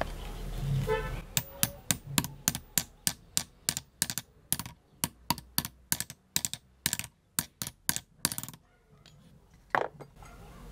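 Metal being tapped in a quick, even series of sharp strikes, about three a second, stopping briefly before one last tap near the end.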